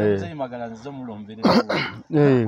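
A man clears his throat with a short, sharp cough about one and a half seconds in.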